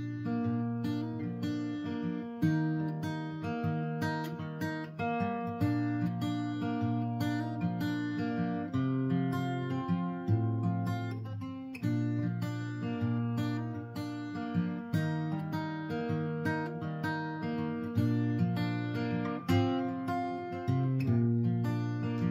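Solo acoustic guitar playing a song's instrumental introduction: a steady picked pattern of chords over alternating bass notes.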